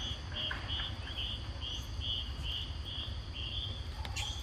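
Insects chirping: a short chirp repeating about two to three times a second over a steady high insect drone, with a low rumble underneath.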